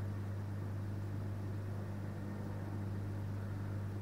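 Steady low electrical hum with a faint whirr of running machinery from the CO2 laser cutter setup, unchanging throughout.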